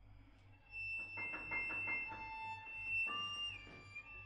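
Violin and piano duo starting to play about a second in: a high held violin note over quick repeated piano notes, with the held note sliding down near the end.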